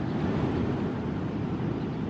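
Steady, low rushing of wind and sea surf, with wind noise on the microphone.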